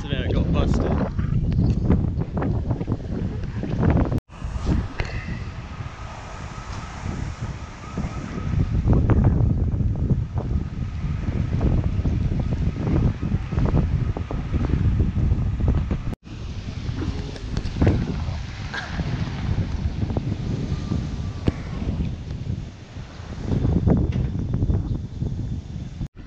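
Wind buffeting a small action-camera microphone in a storm, a heavy low rumble that swells and eases in gusts. It drops out suddenly twice, about four seconds in and again midway.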